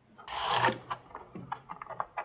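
Blue tape being peeled off the inside of a plastic filament-dryer chamber: a short rasp, then a run of small clicks.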